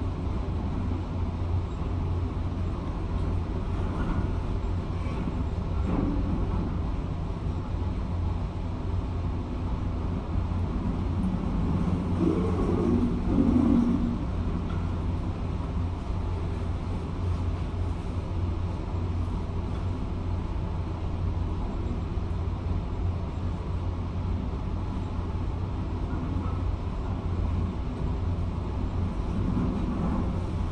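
Steady low rumble of a demolition excavator's diesel engine and passing traffic, muffled through an office window. About twelve seconds in it grows louder for a couple of seconds, with a wavering pitched tone over the rumble.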